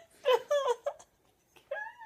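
High-pitched vocal sounds with a wavering pitch, in two short bursts: one in the first second and one beginning near the end.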